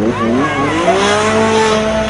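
An engine revving up, its pitch rising over the first second and then holding steady and loud.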